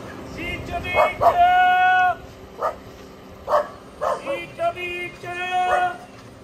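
A dog barking repeatedly: a run of short barks mixed with a few longer, drawn-out yelps.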